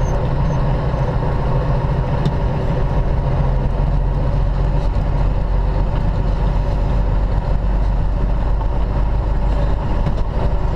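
Semi-truck diesel engine running at low speed, a steady low drone heard from inside the cab.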